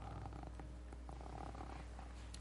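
Faint room tone under a steady low hum.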